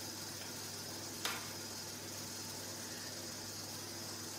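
Quiet room tone: a steady background hiss with a low hum, and a single faint click about a second in.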